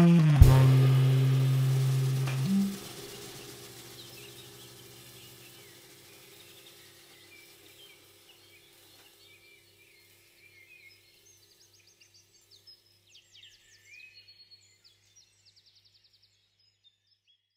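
A final low saxophone note held for about two seconds over a closing cymbal-and-drum hit, the cymbal ringing out and fading away over several seconds. Faint bird chirps come in near the end.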